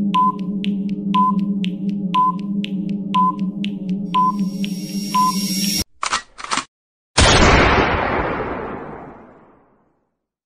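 Countdown timer sound effect: a tick about once a second over a steady low electronic drone, with a hiss building up before it cuts off. Two short bursts follow, then a loud sudden hit that fades away over about two and a half seconds, marking the reveal.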